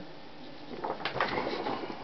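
A large paper record insert rustling and crackling as it is handled and turned over by hand, starting about a second in.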